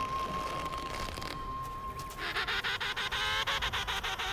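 A held musical note for the first half, then emperor penguins calling: rapid, pulsing, trumpet-like calls that start about halfway through.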